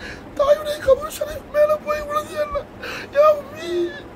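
A man's voice weeping as he recites, in short high-pitched, wavering phrases broken by sobs.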